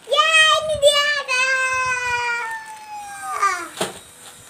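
A young girl's long, high-pitched squeal sliding slowly down in pitch, then a shorter falling squeal, with a sharp knock near the end.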